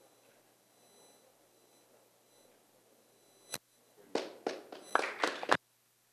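A quiet room, a single sharp knock about three and a half seconds in, then a short burst of audience applause starting about a second later and cutting off suddenly near the end.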